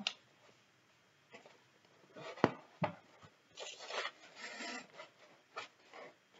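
Toy theater set pieces being handled and placed on a tabletop: two sharp knocks about two and a half seconds in, then a second or so of rubbing and scraping, and a couple of light taps near the end.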